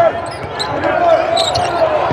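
A basketball being dribbled on a hardwood court, with sneakers squeaking on the floor during play.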